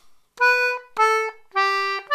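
Frank Edgley GD anglo concertina playing three separate notes, each about half a second long, each a step lower than the one before.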